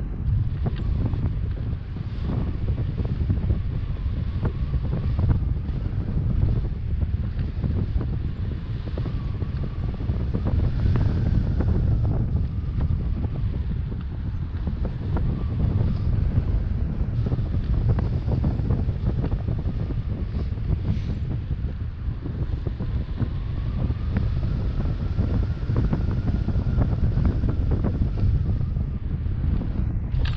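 Airflow buffeting the camera microphone in paraglider flight: a steady, low rumbling wind rush, with a faint wavering whistle now and then.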